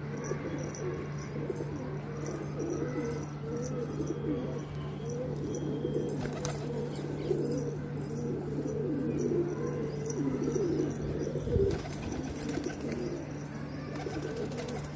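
A flock of domestic high-flyer pigeons (Shahjahanpuri kaldume) cooing continuously, many calls overlapping, over a steady low hum. There is one dull thump near the end.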